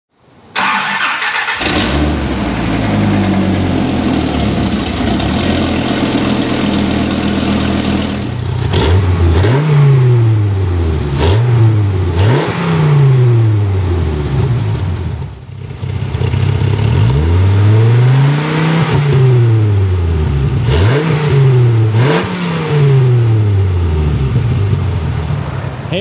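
1993 Dodge Viper RT/10's 8.0-litre V10 firing up and idling steadily, then revved about six times, each rev climbing and falling back to idle, one of them longer than the rest.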